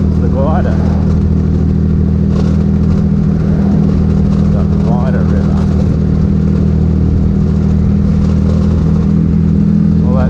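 Triumph Rocket III's inline three-cylinder engine running steadily at cruising speed, heard from the handlebars with wind noise over it. The engine note holds an even pitch and loudness throughout, with no revving or gear changes.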